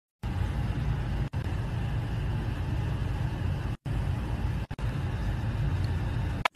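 Steady outdoor background noise, a low rumble under a hiss, broken by a few brief drop-outs where the sound cuts out completely.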